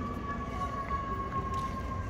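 A single sustained high tone, slowly sinking in pitch, over a low steady rumble.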